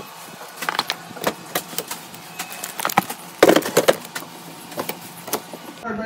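Plastic-wrapped snack packs crinkling and clicking as they are handled and packed into a plastic storage bin: a run of irregular rustles and light knocks, busiest about three and a half seconds in.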